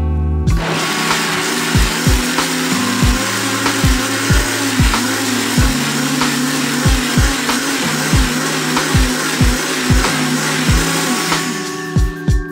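Countertop blender switching on about half a second in and running steadily as it purées roasted vegetables, cilantro and stock into a smooth green sauce, then switching off near the end. Background music with a steady drum beat plays throughout.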